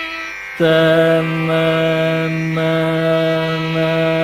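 Carnatic classical singing: a male voice holds one long, steady note that comes in louder about half a second in, in the slow, unmetred style of an alapana.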